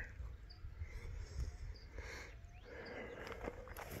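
Quiet outdoor ambience: a low wind rumble on the phone's microphone, soft footsteps on rocky ground and a few faint short high chirps about a second apart.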